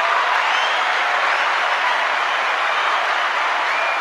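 Canned crowd applause with some cheering: a steady, dense wash of clapping that starts to taper off near the end.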